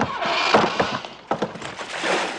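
A man falling into shallow pond water: a loud splash, then a rapid run of wet thuds and splashes as he flounders.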